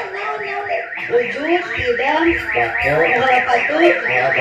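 An electronic alarm warbling in a fast rise-and-fall chirp, about five chirps a second, sounding steadily over people's voices.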